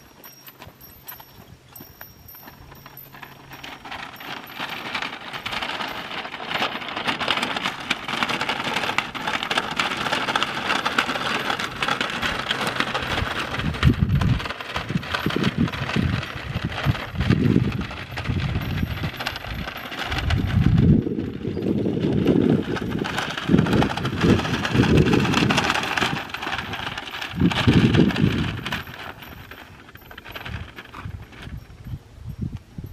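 Red plastic shopping cart dragged on a rope over hard dirt, its wheels and basket rattling and clattering steadily, with low rumbling surges in the second half.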